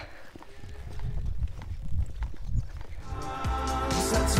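Footsteps and the taps of trekking poles on asphalt while walking, over a low rumble. About three seconds in, background music comes in.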